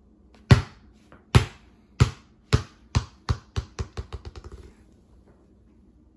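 A size-5 Umbro Neo Swerve football is dropped onto a hardwood floor and bounces a dozen or more times. The bounces come quicker and fainter until it settles about four seconds later.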